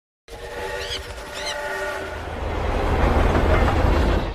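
Train sound effect: a train horn sounds a held chord of several tones for about a second and a half. Then the low rumble of the running train grows steadily louder and cuts off abruptly.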